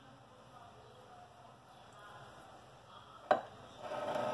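Quiet room tone with faint handling, then a single sharp click a little over three seconds in, followed by brief rustling as things are handled near the end.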